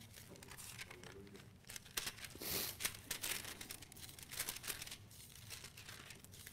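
Thin paper pages of a Bible being turned, a run of soft rustles and crinkles with one louder rustle about two and a half seconds in.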